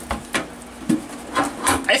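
Sheet-steel toolbox being handled and shut: a handful of short knocks and scrapes of the metal lid and body against each other.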